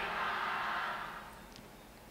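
Faint echoing tail of a man's shouted cheer dying away over about a second and a half, then near silence.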